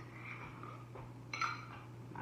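Quiet room tone with a steady low hum, and one short sharp sound about one and a half seconds in.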